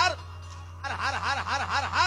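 One voice laughing in quick, even 'ha-ha' pulses that rise and fall in pitch, about five a second. A short run stops just after the start, and a second run begins a little under a second in. A steady low hum runs underneath.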